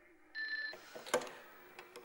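A telephone rings briefly, then the handset of an old-style corded telephone is lifted off its cradle with a sharp clack about a second in, followed by a couple of small clicks as it is raised to the ear.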